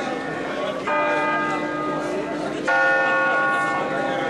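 Bronze church bells from a five-bell set cast by Angelo Ottolina of Bergamo in 1950, tuned in D-flat, swinging on their wheels and rung by rope. Two loud strokes, about two seconds apart, each left ringing and fading slowly.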